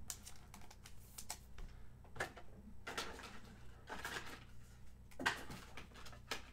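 Trading cards being handled and flicked through: irregular light clicks and short slides of card stock against card stock.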